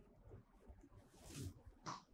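Near silence: room tone, with two faint brief soft noises near the end.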